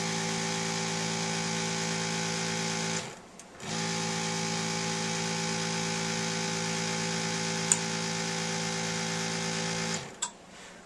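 Electric suction pump for follicle aspiration, running with a steady motor hum. It cuts out for under a second about three seconds in and then starts again. The gentle suction draws follicular fluid through the aspirating needle into a collection tube and makes the follicle collapse.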